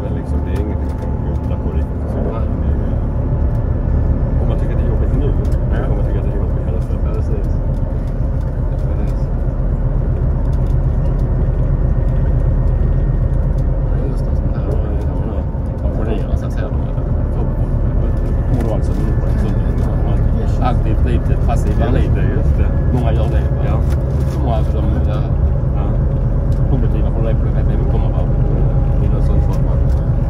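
Inside a moving bus: a steady low engine and road rumble, with indistinct passenger voices in the background.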